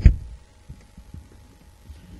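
A loud, low, dull thump of something bumping against the webcam microphone, followed by a few faint soft knocks.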